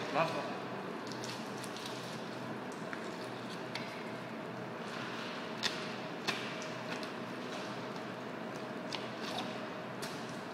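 Filleting work on a plastic cutting board: a few sharp knocks of the knife against the board, around the middle and again near the end, over a steady room hum and faint background voices.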